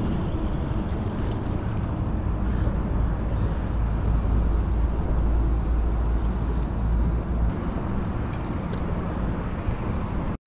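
Wind rumbling on an action-camera microphone, a steady rush that grows heavier and lower for several seconds in the middle, with a few faint ticks near the end.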